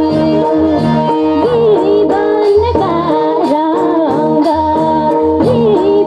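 A woman singing a Nepali dohori folk song into a microphone, her voice bending and ornamenting the melody over a steady harmonium and a repeating low drum beat.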